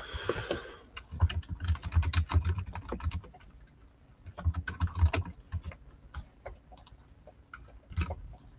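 Typing on a computer keyboard: a run of quick keystrokes from about a second in, a second run about halfway through, and scattered single key taps between them.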